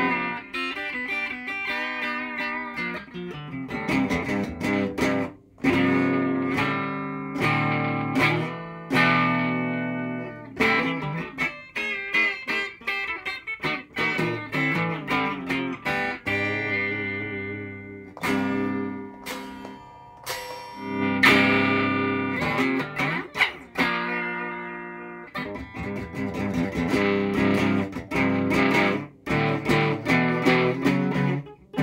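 Electric guitar played through a small wooden amplifier: picked chords and riffs in phrases with short pauses between them, notes left ringing.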